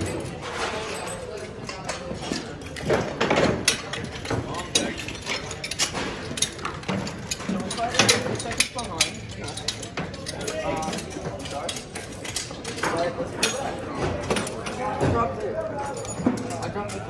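Rapid metal clanks and clicks of hand tools and parts as a team works on a small-block Chevy engine on a stand, over a crowd's voices.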